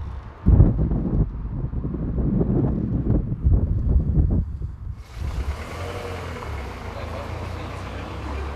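Indistinct voices over an uneven low rumble, giving way abruptly about five seconds in to a steady hiss.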